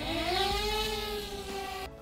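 Small DJI quadcopter's motors and propellers spinning up for take-off: a whine that rises in pitch, then holds steady at idle, and cuts off suddenly near the end.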